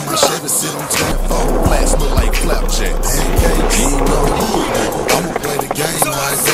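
Skateboard rolling and clacking over rough concrete as the skater pushes along, with hip-hop music playing over it.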